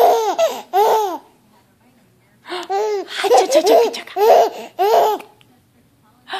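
A baby laughing in bursts of high-pitched, rising-and-falling squeals: a short run in the first second, a pause of about a second, then a longer run of laughs that ends near the end.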